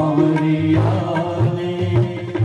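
A male voice singing a Hindi bhajan in a long, held, chant-like line, accompanied by harmonium, tabla and electronic keyboard.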